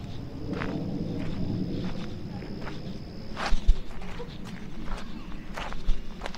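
Footsteps of a hiker walking on a gravelly dirt trail: irregular steps, with two heavier thumps in quick succession about three and a half seconds in and another near the end.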